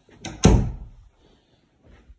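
A closet door pushed shut: a couple of light clicks, then one loud thud about half a second in that dies away quickly.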